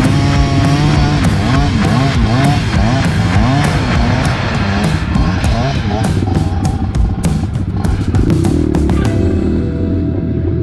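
Dirt bike engine revving up and down again and again as the bike labours up a steep, rutted climb, most clearly in the first six seconds, over background rock music.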